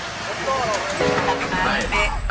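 Speech only, with background music; a steady low beat comes in about a second and a half in.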